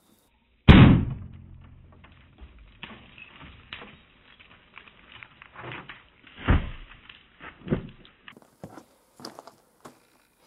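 A single 9mm pistol shot, a sharp loud crack whose report dies away over about a second. A few softer knocks follow several seconds later.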